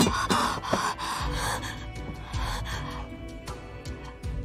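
A person gasping in short, ragged breaths over a tense dramatic score, the gasps fading out after about three seconds. A sharp hit at the very start, as a dagger lands on a stone floor.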